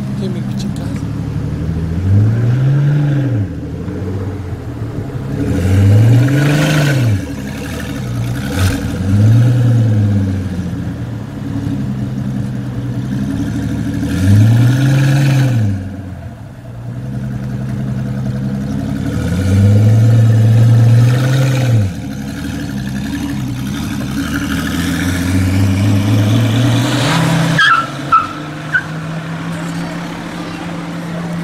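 Pagani Huayra's twin-turbo V12 revved in about six short rises and falls, the last a longer pull as the car accelerates away. Two sharp high chirps come near the end.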